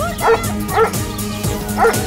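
A dog barking: three short barks, two about half a second apart and a third near the end, over background music.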